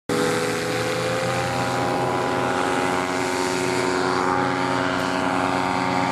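Paramotor engines and propellers running steadily, several engine tones overlapping and drifting slightly in pitch.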